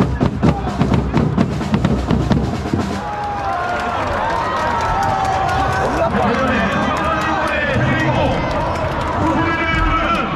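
Supporters' bass drums beating fast, stopping about three seconds in; then a stadium crowd of football supporters shouting with many overlapping voices.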